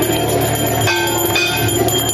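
Brass temple bells rung over and over for the aarti: a dense, continuous clanging in which new strokes about every half second layer ringing tones of several pitches over one another.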